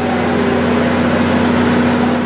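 Passenger train running past on the track: a steady engine hum under a loud wash of rolling noise.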